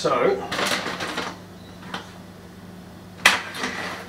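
Kitchen handling noises as a cook moves about the bench: a brief rustle about half a second in, a faint click near two seconds, and one sharp clatter a little after three seconds, over a steady low hum.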